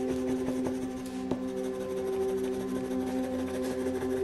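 Soft ambient background music of steady held notes, with faint scratchy strokes of a wax crayon colouring on paper.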